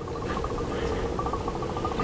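CO2 gas from a pierced capsule flowing through an AutoSiphon refiller into the water of a soda siphon: a faint, steady hiss and bubbling of gas going into the water.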